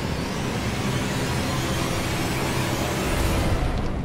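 A steady rushing noise, like a wind or whoosh sound effect, over a low droning music bed, cutting off suddenly near the end as the scene changes.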